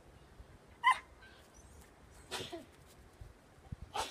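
A dog gives one short, sharp bark about a second in, followed by a fainter, rougher sound about a second and a half later.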